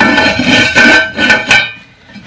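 Cookware lid knocking against a casserole pot, clattering a few times and ringing with a sustained metallic tone that fades out.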